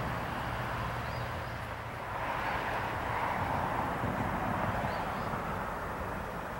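Freight cars rolling away on curved track: a steady rumble and wheel-on-rail rushing that swells for a few seconds in the middle, with a few faint high chirps over it.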